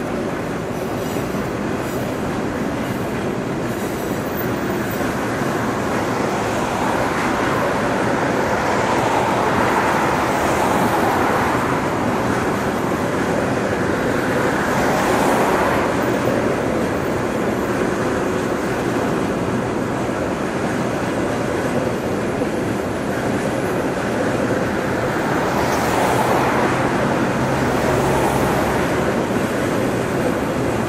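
Locomotive-hauled passenger coaches rolling across a railway bridge: a steady rumble of wheels on rails, with a second passenger train passing on the parallel track. The sound swells in loudness around ten seconds in, again around fifteen, and near the end.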